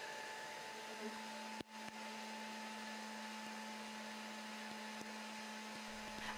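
Battery-powered Paw Patrol bubble blower's fan motor whirring steadily with a constant hum, with a few faint pops of bubbles bursting on the microphone.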